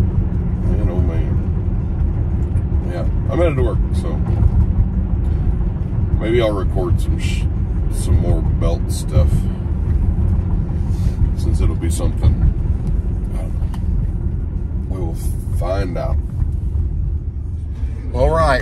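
Steady low road and engine rumble heard inside the cabin of a moving SUV, with a few short, faint bits of voice and light clicks over it.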